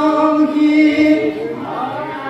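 Men's voices chanting Assamese devotional naam-kirtan together, holding one long steady note. About a second and a half in, it gives way to a softer, wavering phrase.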